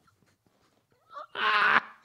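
A man's laughter: faint breathy laughs, then a short, loud, high-pitched whine of laughter about a second and a half in.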